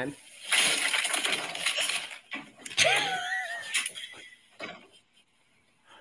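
A short comedy reel's soundtrack played from a phone speaker held up to the microphone: a noisy, crash-like burst about half a second in, then a brief voice-like sound that swoops up and down in pitch, fading out before the end.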